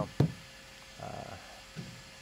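A man's hesitant speech: the end of a drawn-out "so", a sharp click just after, then a soft "uh" about a second in, with quiet between.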